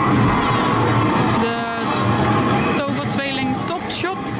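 Soundtrack of a wall projection of a 1920s city street scene playing in an exhibition room: street bustle with a vehicle, voices and music mixed together, with a short held tone about a second and a half in.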